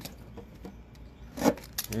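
A hockey card tin being handled: quiet rubbing, then a single sharp click about a second and a half in.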